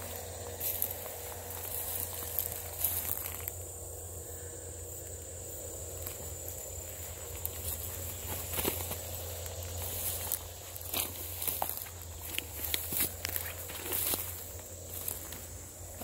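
Footsteps crunching through freshly mowed dry grass and tangled vines, with scattered crackles of stems breaking underfoot over a steady low hum.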